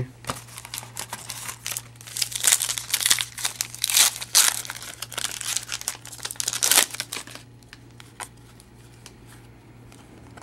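Foil wrapper of a trading-card pack crinkling as it is opened by hand, in repeated flurries; the crinkling stops about seven and a half seconds in.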